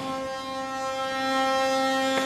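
A steady, held low-pitched tone with many overtones, unchanging in pitch.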